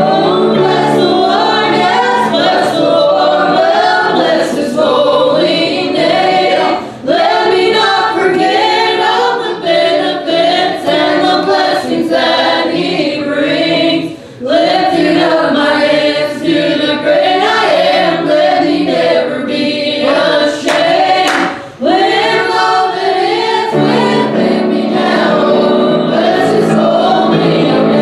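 Youth choir of mostly female voices singing a gospel song in unison with piano accompaniment, taking a short breath between phrases about every seven seconds.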